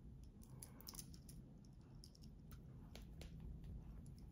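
Faint, scattered light clicks of a Seiko Turtle's stainless steel link bracelet and clasp as the watch is handled, over near-silent room tone.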